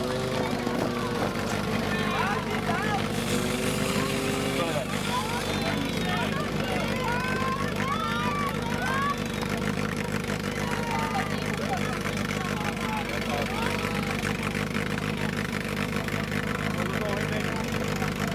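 Portable fire-pump engine running steadily under load throughout, its pitch shifting a little in the first five seconds. Voices shout over it, mostly in the first half.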